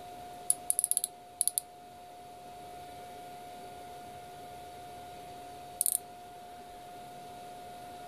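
Ratchet stop on the thimble of an iGaging digital micrometer clicking as it slips, the sign that the spindle has closed on the work at its set measuring force. There is a quick run of small clicks about half a second in, two more around a second and a half, and a short group near six seconds.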